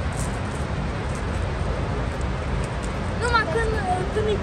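Steady rushing of the Rhine Falls waterfall and the fast river below it, heaviest in the low range. A person's voice is heard briefly near the end.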